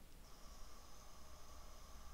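Faint steady hiss and low hum: the background noise of a raw camera clip being played back.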